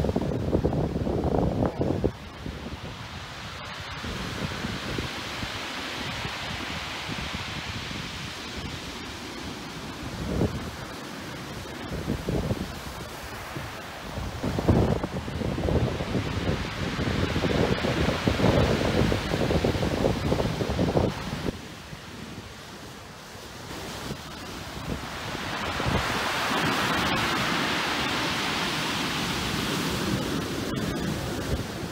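Sea surf breaking and white water washing up the beach, with wind gusting on the microphone in bursts.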